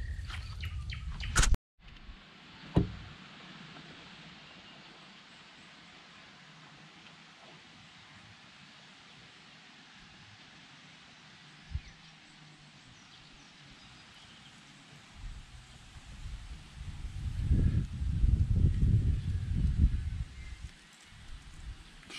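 Quiet riverside ambience: a faint steady hiss of the open air with bird calls. About two-thirds of the way through, a low, gusting rumble of wind on the microphone swells up and stays loud for several seconds.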